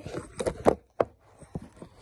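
Handling noise from a phone held close in the hand: rubbing, with a few knocks and clicks, the two sharpest close together near the middle.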